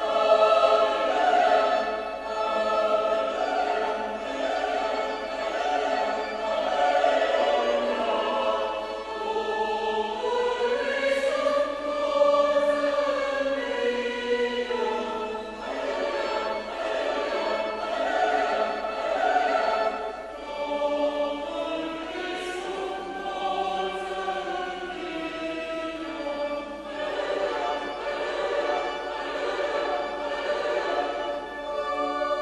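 A choir singing the closing hymn of the Mass, many voices in held chords that move slowly from note to note.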